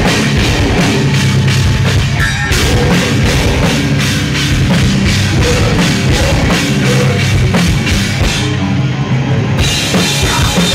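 Metal/hardcore band playing live: heavy distorted guitars, bass and fast, even drumming with cymbals. The cymbals drop out briefly about two seconds in and again near the end.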